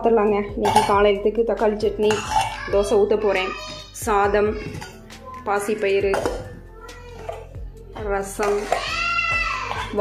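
Stainless-steel pot lids and vessels clinking and knocking as they are lifted and set down, over background music.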